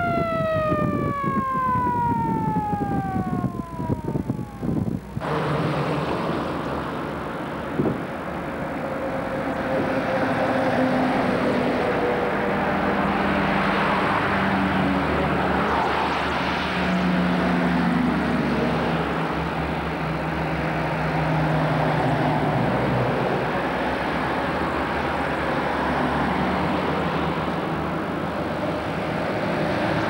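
A siren that has just wound up falls slowly in pitch for about five seconds and cuts off. After that comes the steady engine and tyre noise of vintage military vehicles driving by in convoy.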